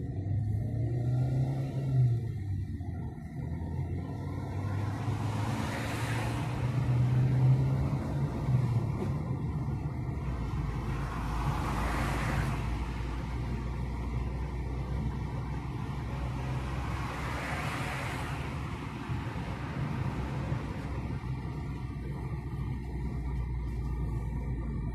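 Car engine and road noise heard from inside the cabin while driving slowly down a street. The engine note rises and falls over the first eight seconds or so, and three swells of rushing noise come about six seconds apart.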